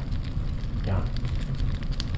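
Fire sound effect of burning flames, added to the soundtrack: a steady low rush with a continuous scatter of sharp crackles.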